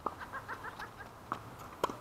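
Tennis ball being struck and bouncing on a hard court in a rally: sharp pops, one at the start, one a little past halfway and the loudest just before the end. Between the first two, a quick run of five or six short high chirps.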